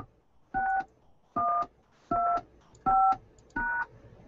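Touch-tone (DTMF) keypad beeps: five short two-note tones, about one every three-quarters of a second, keying a conference-call access code in answer to the automated prompt. The last tone is the pound key that finishes the code.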